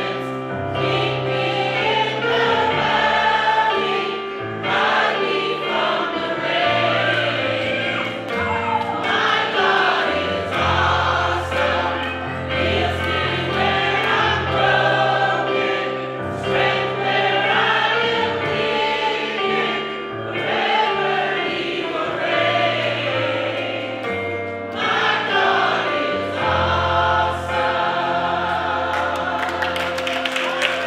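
Gospel choir singing in full voice over instrumental accompaniment with a steady bass line.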